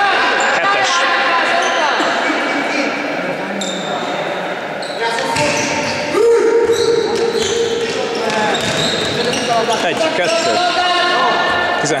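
Indoor football (futsal) game in a reverberant gym: players calling and shouting to each other, shoes squeaking on the court floor and the ball thudding, with voices at their loudest about six seconds in.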